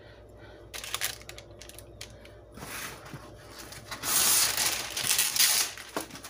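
A few light clicks as chocolate-covered pretzels are peeled off a silicone mat. From about two and a half seconds in, a sheet of parchment paper rustles and crinkles, loudest over the last two seconds.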